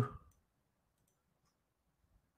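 The end of a man's word, then near silence with a few very faint clicks.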